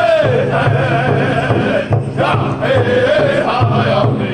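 Powwow drum group singing together in unison over a large powwow drum struck in a steady, even beat by several drummers with padded sticks. The voices are pitched high and carry a wavering melody, with a short break for breath about halfway through.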